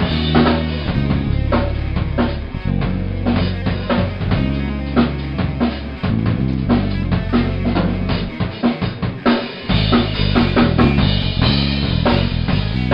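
Tama drum kit played in a fast, busy groove, with kick, snare and cymbal strikes in quick succession, heard through a camera's microphone in the room. Low sustained bass notes change pitch underneath and drop out briefly about nine seconds in.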